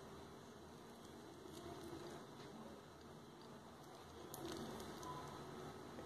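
Faint handling noise from a stainless-steel watch bracelet being turned in the fingers, with a few soft clicks about four and a half seconds in.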